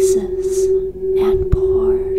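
A crystal singing bowl holding one steady, unbroken tone. Soft breathy hisses and faint gliding, voice-like sounds come and go over it.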